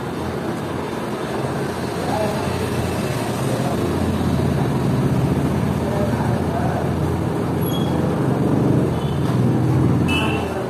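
A steady low rumble of background noise with faint, indistinct voices, swelling a little near the end.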